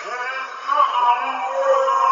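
Distorted trap metal instrumental in a quieter passage: an electronically processed melodic line with pitch glides, swelling louder a little under a second in.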